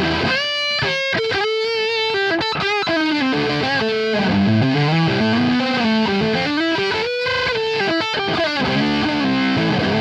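Electric guitar played through a Mega Distortion pedal and amp: a single-note lead line of quick notes with string bends and vibrato.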